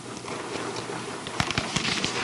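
Paper rustling and handling at the lectern microphone, with irregular sharp clicks that come more often in the second half.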